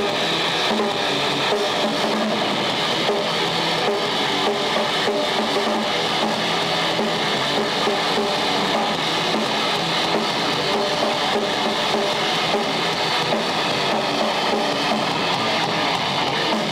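Electric guitar of a live thrash/grindcore band playing steadily and loud through an amplifier.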